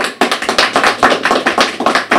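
Audience applauding: a dense, irregular patter of many hands clapping.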